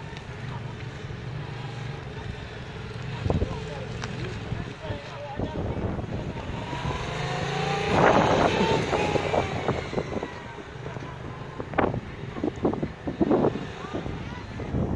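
Yamaha MT-07's parallel-twin engine pulling away and cruising at low speed, growing loudest as the bike passes close by about eight seconds in, then fading. A few sharp knocks come near the end.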